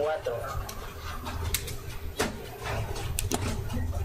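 A few short, sharp computer clicks from a mouse or keyboard as a website search is run, over a steady low hum.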